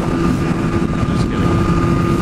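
Kawasaki ZX-10R's inline-four engine running steadily at freeway cruising speed, mixed with wind and road rush on the camera microphone.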